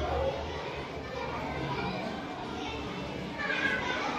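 Indistinct children's voices talking, growing louder near the end.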